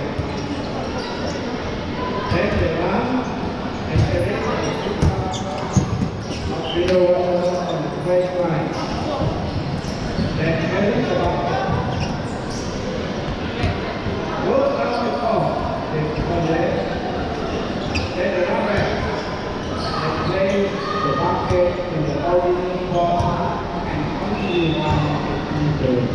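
Dodgeballs thudding and bouncing on a hard indoor court at irregular moments, over steady shouting and calling from players and spectators, echoing in a large sports hall.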